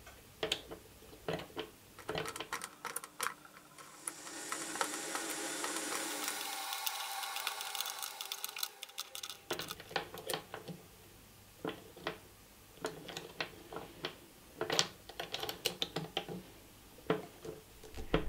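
Light clicks and taps of a silver ring blank being pressed and worked around the die of a hand ring bending tool. A steadier, higher sound with a ringing edge runs for about five seconds in the middle.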